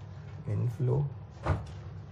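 A man's voice in a few short sounds, then a single sharp knock about one and a half seconds in.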